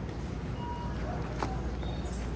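Supermarket background: a steady low hum, a short faint electronic beep a little over half a second in, and a single sharp click about halfway through as a seasoning bottle is handled on the shelf.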